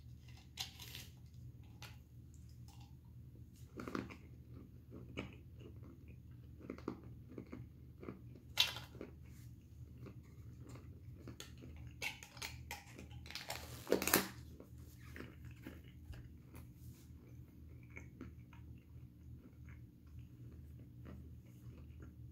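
Close-up chewing and crunching of roasted habanero honey peanuts: a run of small, irregular crunches with a few louder sharp clicks about a third of the way in and past the middle, over a low steady hum.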